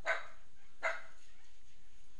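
A dog barking twice in the background, two short barks about three-quarters of a second apart, over faint steady room noise.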